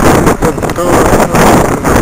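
Strong wind buffeting the microphone, setting in suddenly and very loud, with gusty rushing noise over a man's voice.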